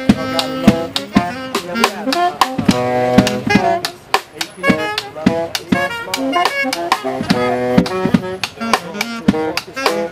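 Small jazz band playing: saxophone melody lines over a drum kit struck with sticks, the strokes coming thick and fast under the horns.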